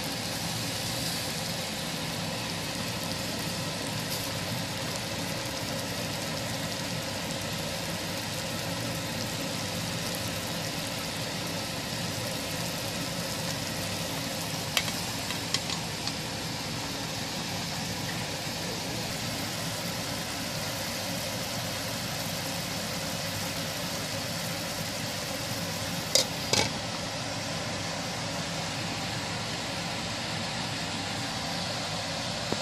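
Chicken skins at a rolling boil in a large stainless-steel pot: a steady bubbling hiss. A few brief clicks come about halfway through, and a sharper pair of knocks a few seconds before the end.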